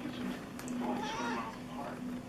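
A domestic cat meowing once, a drawn-out call of about a second in the middle.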